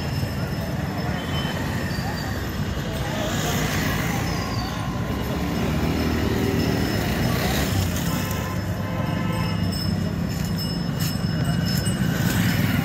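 Street traffic on a busy town road: motorcycles and scooters passing in a steady low rumble, with people's voices in the background.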